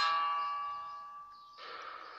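A single ringing instrument note or chord of the song's intro, struck just before, fading slowly away. A fainter new note comes in near the end.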